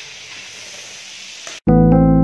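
A steady low hiss for about a second and a half, then a sudden cut to loud electric piano music.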